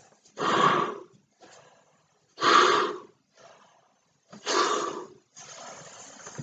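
A man blowing up a large latex weather balloon by mouth: three heavy, strained breaths about two seconds apart, with quieter breaths between them.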